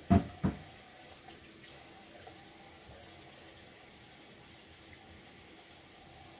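Tap water running steadily into a bathroom sink, after two sharp knocks in quick succession right at the start.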